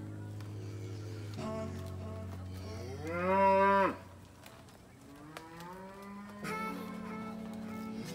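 A cow mooing loudly once, about three seconds in: a rising call held for about a second, over steady background music.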